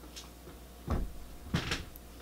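Two short, dull thumps about two-thirds of a second apart: handling knocks.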